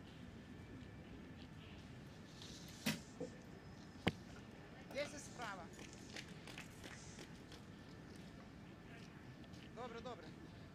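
A recurve bow being shot: a short knock and then, about four seconds in, a single sharp snap of the release, over a quiet background. Faint distant voices come shortly after.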